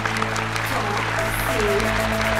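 Studio audience clapping over game-show background music, with a steady held note coming in a little after a second.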